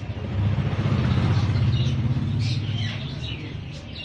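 A vehicle engine rumbling past, swelling about half a second in and fading toward the end, with small birds chirping high above it.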